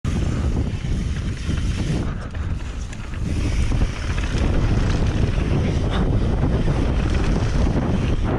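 Wind buffeting an action camera's microphone as a mountain bike descends a dry dirt trail at speed: a steady, heavy rumble. One sharper knock comes about halfway through.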